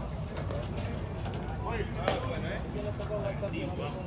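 Field ambience at a baseball game: distant voices of players calling out over a steady low background noise, with one sharp click about two seconds in.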